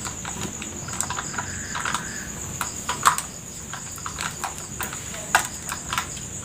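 Irregular light clicks and taps from a drink can being handled, over a steady high-pitched insect chirring.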